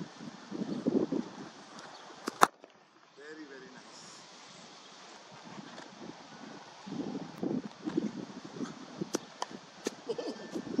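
Gusty wind buffeting the microphone, with a loud sharp crack about two and a half seconds in. Near the end, two more sharp cracks, the last of them a cricket bat striking the ball.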